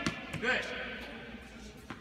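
A tennis ball struck with a racket makes a sharp pop right at the start. A second sharp ball impact comes just before the end.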